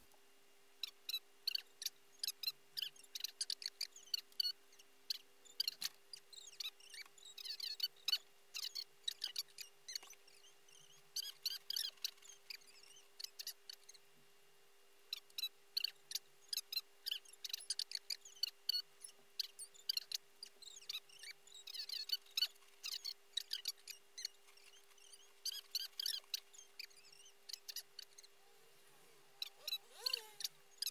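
Fast-forwarded sound: rapid runs of short high-pitched chirping squeaks with a few brief pauses, over a steady hum.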